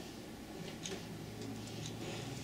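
Quiet room tone with a few faint, scattered ticks.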